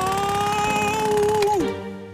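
Cartoon jackhammer (road breaker) hammering rapidly into asphalt, under a long held, slightly rising high tone. The hammering and the tone stop together near the end.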